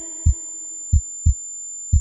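Break in a Punjabi pop song's backing track: deep double bass thumps, a pair about once a second like a heartbeat, over a faint held note that fades away.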